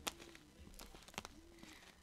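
Quiet handling of a small printed cardboard card as it is folded back into shape: a few faint taps and clicks, the sharpest at the start and again just over a second in.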